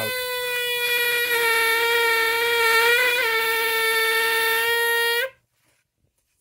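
ZOIC PalaeoTech ZPT-TB Trilobite pneumatic air scribe running: a high buzzing whine over a hiss of exhaust air, its pitch sagging slightly in the first second and then holding steady until it cuts off suddenly about five seconds in. The freshly oiled pen is being run to purge excess oil out of its bushing.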